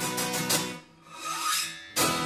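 Acoustic guitar strummed, a chord ringing and dying away to a brief near-silent pause about a second in. A rising scrape follows, fingers sliding along the strings, before the next loud strum lands at the end.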